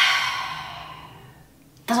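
A woman's long, breathy sigh that starts loud and fades away over about a second and a half.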